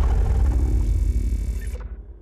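Deep rumbling tail of a cinematic logo-sting sound effect, following its impact hits and fading out near the end.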